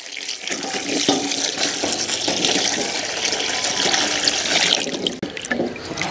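A stream of water pouring and splashing into a stainless steel bowl of potatoes being washed, running steadily with a few light knocks.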